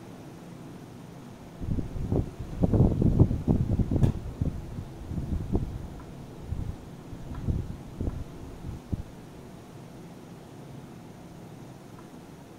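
Low rubbing and knocking handling noise while colouring with a pencil at a desk, loudest about two to four seconds in with one sharp click near four seconds, then a few scattered knocks that stop about nine seconds in, over a steady fan-like background hiss.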